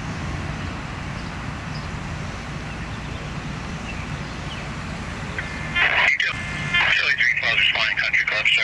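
Steady low hum of fire-truck engines running at the scene. About six seconds in, a two-way radio cuts in with a short tone, then a narrow, tinny voice transmission.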